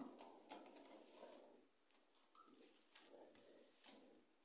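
Near silence, with faint handling noise from model railway wagons being picked up and placed: light rustles and a soft click about three seconds in.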